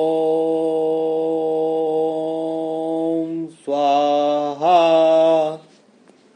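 A male voice chanting a mantra. It holds one long steady note for about three and a half seconds, then chants two shorter notes, each with a slight rise in pitch at its start.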